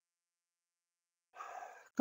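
Dead silence, then near the end a short, faint in-breath by the lecturer just before he starts speaking again.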